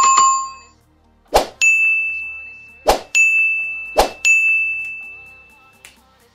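Sound effects for an animated subscribe-button overlay: a chime at the start, then three times a sharp mouse-like click followed by a bright bell ding that rings on and fades.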